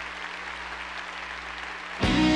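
Audience applause, a steady even clapping.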